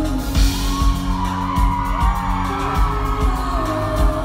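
Live pop song from a band with a woman singing lead over a steady bass beat, heard from the audience in a hall, with a whoop from the crowd about half a second in.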